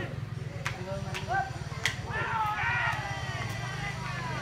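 People talking close by, with three sharp clicks in the first two seconds, over a steady low hum.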